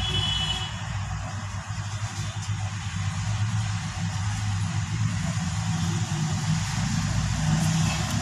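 Steady low mechanical hum of a running motor or engine, with a short high-pitched tone in the first second.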